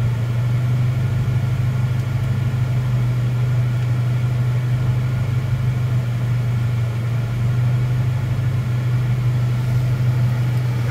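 Boosted car engine idling steadily at about 1,000 rpm, a constant low hum with no changes in speed, heard from inside the cabin. The engine is mid-tune and running smoothly at idle.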